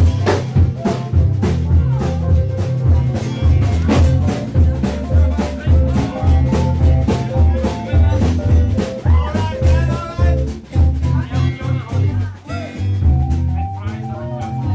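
A pop cover band playing an upbeat song: a drum kit keeping a steady beat under a bass line and a melody, with a brief drop in loudness near the end.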